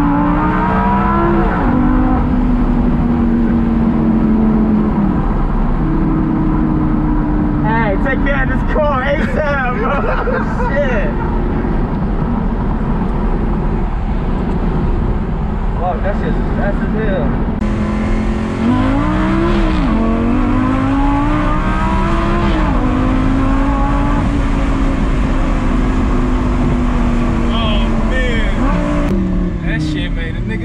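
Lamborghini Gallardo's V10 engine heard from inside the cabin as the car is driven. The engine climbs in pitch and drops back several times as it accelerates and shifts through the gears.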